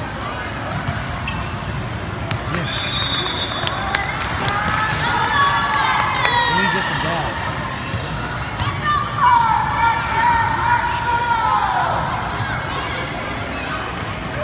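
Sounds of an indoor volleyball rally: the ball being struck and bouncing in sharp knocks, with voices calling out over the play.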